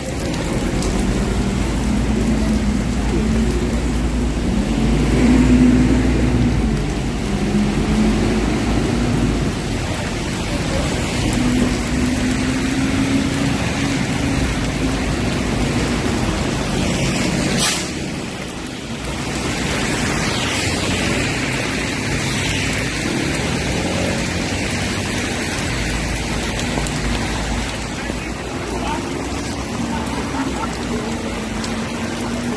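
Market ambience: indistinct voices of people nearby over a steady background hiss and low hum, with one sharp click a little past the middle.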